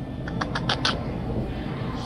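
Steady supermarket room noise, with a quick run of about five short, high squeaks about half a second in.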